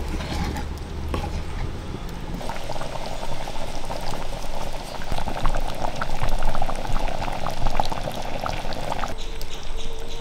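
Thick coconut-based curry bubbling and popping in a metal pan over a wood fire, a dense run of small pops from about two seconds in that stops abruptly about a second before the end. A ladle stirs in the pan at the start.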